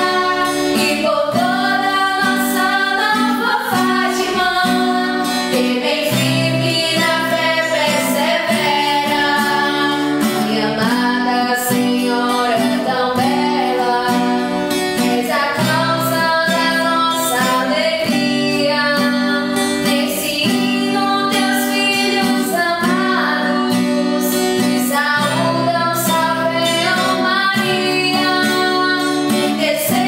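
Music: female voices singing a melody over a strummed acoustic guitar.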